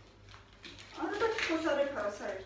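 A voice, pitched and wavering, starting about a second in and lasting about a second.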